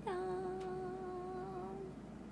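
A young woman's voice holding one long, level sung "jaaan" (the Japanese "ta-da!") for almost two seconds, as a reveal.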